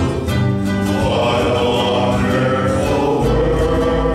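Men's choir singing sustained harmonies, with guitar accompaniment.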